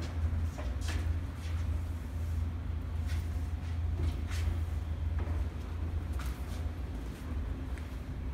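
Scattered light knocks from a large pre-built wooden staircase as it is shifted by hand and walked on, about half a dozen separate taps over a steady low rumble.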